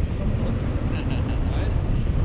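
Wind from the paraglider's airspeed buffeting the camera microphone: a steady, loud, low rumble.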